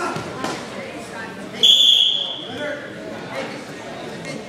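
A referee's whistle blown once, a single shrill blast about one and a half seconds in, stopping the wrestling bout. Crowd voices chatter underneath.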